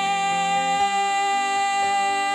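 A song: the singer holds one long, steady note over a soft accompaniment.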